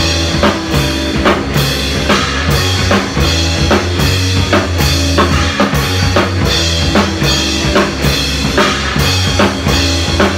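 A rock band rehearsing a song, led by a drum kit played hard with a steady beat of kick, snare and cymbal crashes. Held low notes that change pitch every second or so run under the drums, along with other pitched instruments.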